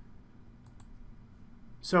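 A few faint, quick computer mouse clicks in an otherwise quiet pause, then a man starts speaking near the end.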